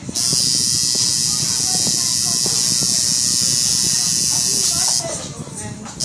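Tattoo machine running with a steady high buzz as the needle works the skin, switching off about five seconds in and starting up again at the end.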